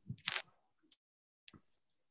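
A short breathy hiss at the very start, then a quiet pause broken by one faint click about one and a half seconds in.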